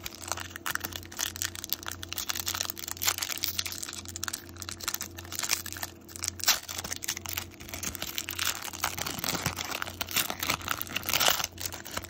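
Shiny foil wrapper of a trading-card pack being torn open and crumpled by hand: a dense, irregular run of crinkling and crackling, with louder crackles about six seconds in and near the end.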